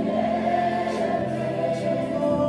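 Live church worship band playing: several voices singing sustained notes over electric guitar and drums, with a few light cymbal strokes.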